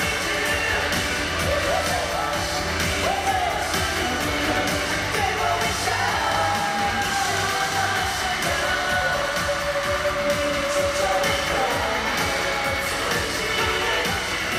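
Live pop song with a steady beat and sung vocals, played loud through an arena sound system and recorded from among the concert audience.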